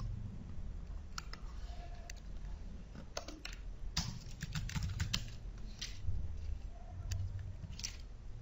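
Computer keyboard typing: a few separate key clicks early on, then a quick run of keystrokes in the middle as a line of code is typed, over a steady low hum.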